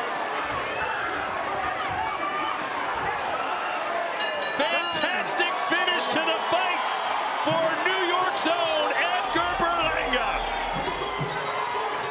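Large arena crowd shouting and cheering during the final round of a boxing bout, growing louder about four seconds in with high whistles among the cheers. A few sharp thuds stand out.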